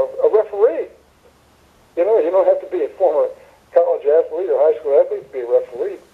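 Speech only: a person talking, with a pause of about a second near the start.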